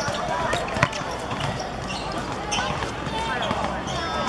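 A football kicked hard once, a sharp thud a little under a second in, with players calling out around it.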